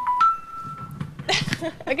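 Electronic game-show chime: two steady notes, stepping up, the second held for about a second. Laughter and a man's voice follow.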